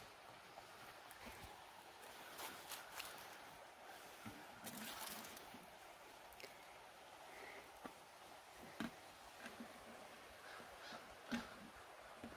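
Very faint handling sounds of a plastic maple-sap bucket: a few light knocks and rustles as it is lifted and hung back on the tree, and a brief soft pour of a little sap into another pail.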